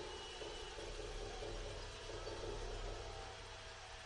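Faint, steady crowd murmur and field ambience of a football stadium as heard on a TV broadcast.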